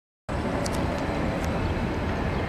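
Outdoor city ambience: a steady din of distant traffic with a low rumble. It starts abruptly about a quarter second in, with a few faint ticks over it.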